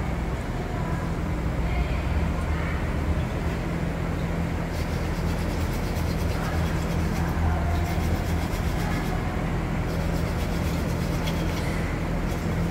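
Steady low mechanical hum over an even background noise, as of workshop machinery running, with no sharp events.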